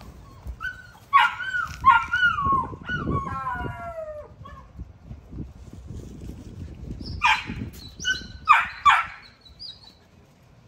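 XL American Bully puppies whining, with high cries that slide down in pitch over a few seconds. They are followed near the end by several short, sharp yelps.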